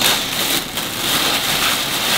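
Close rustling of clothing as a garment is handled and unfolded: a steady, dense crinkling hiss.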